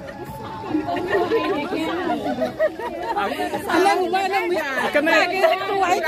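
Several people talking at once close by: overlapping chatter, with no single voice standing out.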